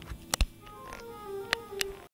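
Camera handling: two sharp knocks about a third of a second in, followed by faint short pitched notes and two more clicks near the end as the camera is moved.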